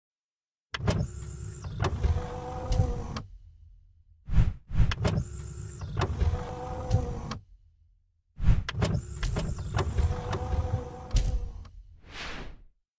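Sound effects of an animated video intro: three similar passes of motorised whirring and clunking, about four seconds apart, each opening with a sharp hit.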